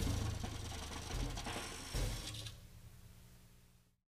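Closing seconds of an experimental free-jazz recording: dense, rattling drum and percussion clatter over electric guitar and bass, with two louder hits, thins out and fades, leaving a low steady hum before the sound cuts off just before the end.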